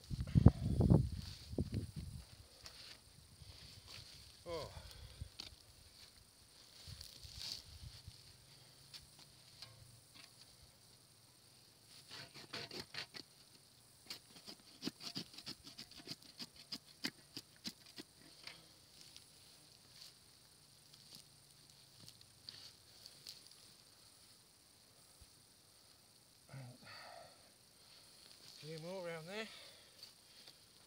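Pruning saw cutting through oak roots in the soil, in runs of quick rasping strokes and sharp cracks. There are low thumps at the start.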